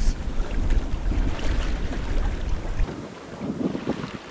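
Wind buffeting the microphone over the rush of water along the hull of a Nicholson 35 sailing yacht under sail. The wind rumble drops away sharply about three quarters of the way through, leaving the water noise.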